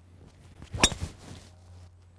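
Golf club swung through and striking a teed golf ball: one sharp crack a little under a second in, the sound of a cleanly struck tee shot.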